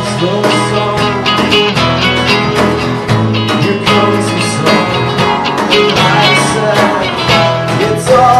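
Acoustic guitar strummed in a steady rhythm, played live.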